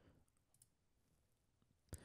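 Near silence: room tone, with a single faint click near the end.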